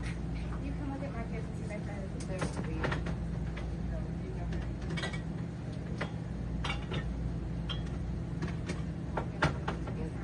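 Steady low hum with faint, indistinct voices and scattered clicks and knocks; the sharpest knock comes near the end.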